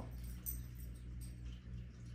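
Quiet room tone dominated by a steady low electrical hum, with a faint, brief high-pitched whine about half a second in.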